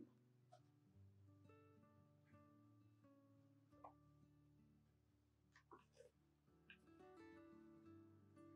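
Near silence with very faint background music of plucked guitar, its notes changing every second or so, and a few faint ticks.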